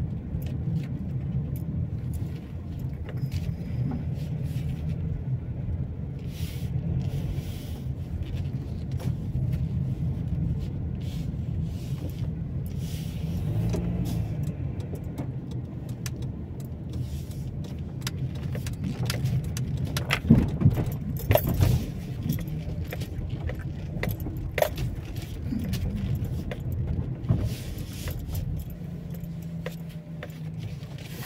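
Car driving slowly, heard from inside the cabin: a steady low rumble of engine and tyres, with frequent light rattles and clicks from inside the car, loudest and busiest about twenty seconds in.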